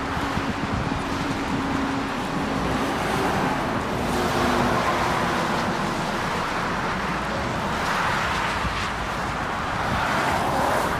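Steady rush of highway traffic passing below a footbridge, with engine hum from a truck and cars, swelling a little as vehicles go by.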